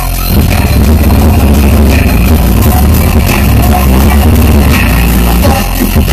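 Live electronic dance music played very loud over a large sound system, dominated by heavy bass that breaks into rapid stuttering pulses near the start and again near the end.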